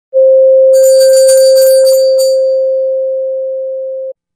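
A steady single pure tone, fading slowly in its second half, with a brief shimmer of high, bell-like chimes over it in the first two seconds.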